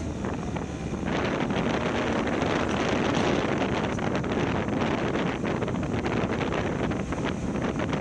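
Wind buffeting the microphone of a motorcycle-mounted camera, crackling over the low running note of the motorcycle's engine while riding. The buffeting jumps louder about a second in and stays that way.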